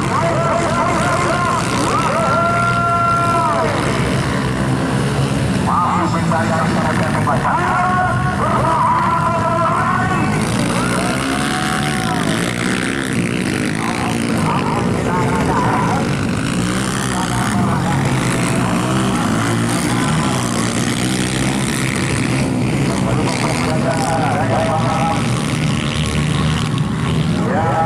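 Several motocross dirt bikes racing, their engines revving with pitch rising and falling again and again as the riders open and close the throttle.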